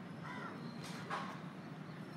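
A bird calling twice within the first second and a half, the second call louder, over a steady low background hum.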